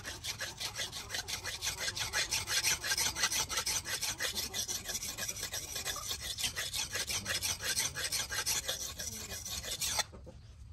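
Steel knife blade being stroked back and forth on a wet sharpening stone by hand, a rapid, even, rasping scrape of several strokes a second, as the edge is honed.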